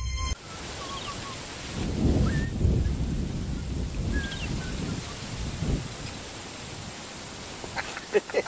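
Background music cuts off just after the start, leaving outdoor ambience: a steady hiss with swells of low rumble and a few short, high bird chirps.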